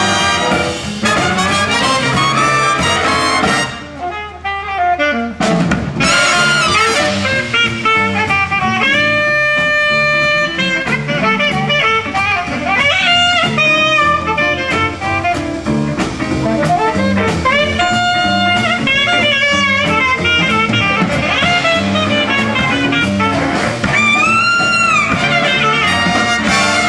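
Jazz big band playing a swing arrangement live, with a saxophone soloing over the rhythm section and brass. The band drops back briefly about four seconds in, then comes back in on a sharp hit.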